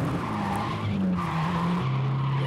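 Nissan S13 Silvia drifting with its tyres squealing under a hard-revving engine. The engine note jumps up about a second in and drops back near the end.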